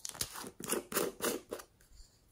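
Small plastic container's lid being twisted open by hand: a quick run of about six or seven sharp plastic clicks and scrapes that stops after about a second and a half.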